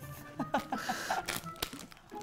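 A woman laughing in short giggles, with a plastic bag crinkling as cotton candy is handled.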